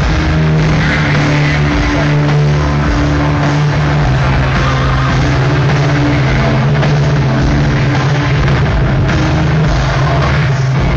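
Progressive metal band playing loud live: distorted electric guitars, bass and drums in a heavy riff with held low notes, heard from within the crowd.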